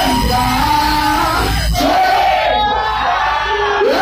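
Dancehall music played loud over a club sound system at a live show, with a packed crowd shouting and singing along.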